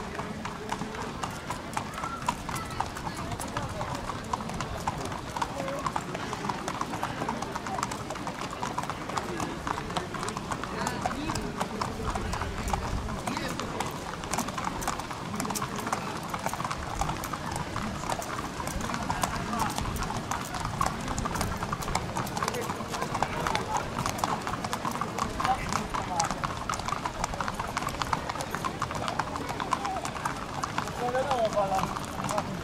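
Horses' hooves clip-clopping at a walk on a paved path, many irregular steps from several horses being led round, with a steady murmur of people talking in the background.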